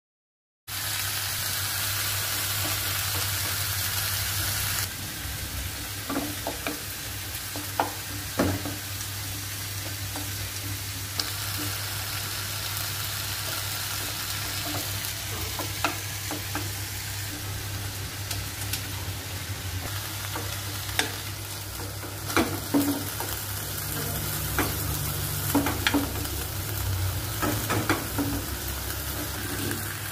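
Food sizzling as it cooks on a stove: a steady hiss with a low hum beneath it and occasional clicks and knocks. It starts about half a second in.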